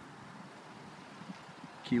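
Faint, steady outdoor background noise with no distinct events; a man starts talking right at the end.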